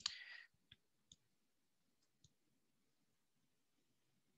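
Faint clicks: a short rustling burst right at the start, then three sharp separate clicks over the next two seconds, and near silence after.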